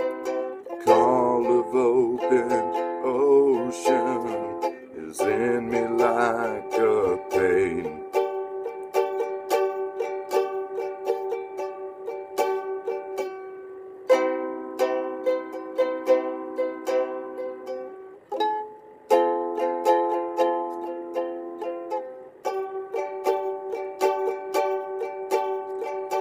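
Solo ukulele strummed in a steady rhythm, repeating a simple chord pattern as an instrumental break between sung verses.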